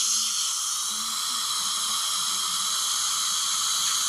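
Dental suction tip in the patient's mouth running steadily: a continuous high hiss with faint steady whistling tones in it.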